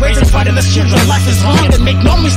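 Hip hop track playing loud, with long held bass notes under a rapping voice.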